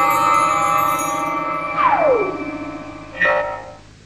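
A cappella vocal group holding a final chord, with a falling pitch glide about two seconds in; the music then fades out.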